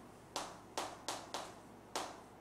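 Chalk striking and sliding on a chalkboard as characters are written: five quick strokes, each beginning with a sharp tap.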